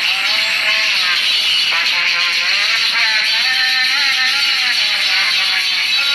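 Devotional singing with long, wavering held notes over a steady bright hiss.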